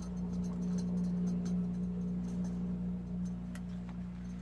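Small metal clicks and scrapes as a canister-stove burner is threaded onto a gas fuel canister, over a steady low hum.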